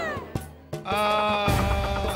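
A woman's drawn-out, high-pitched scream: one long cry ends with a falling pitch just after the start, and a second long, steady cry comes in about a second later, over background music.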